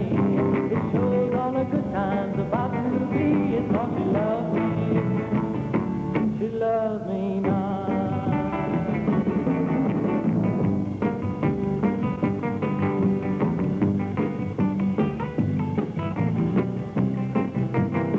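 A song performed live on guitar with band backing, its melody lines bending up and down in the first half. Thin old broadcast sound with the top treble cut off.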